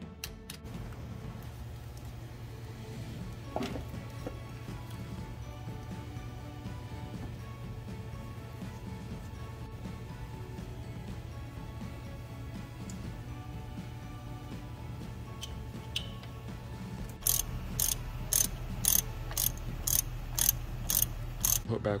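Hand socket ratchet clicking in short repeated strokes, about two a second, in the last few seconds, over a steady low hum.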